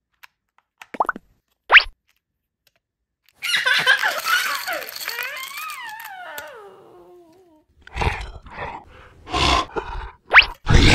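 Edited-in cartoon-style sound effects: a few faint clicks and two quick rising swoops, then a longer noisy stretch full of falling tones, and loud rough bursts near the end.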